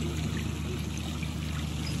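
Steady trickle of running water.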